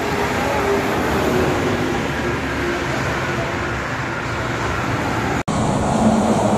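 An intercity coach passes at speed on an expressway. The steady rush of its tyres and engine mixes with the traffic noise, and a faint tone falls slowly as it goes by. The sound drops out for an instant near the end.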